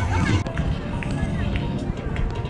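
Outdoor street ambience: people talking, with music playing and a steady low rumble underneath.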